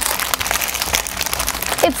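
Thin clear plastic packaging bag crinkling as it is handled, a dense crackle throughout.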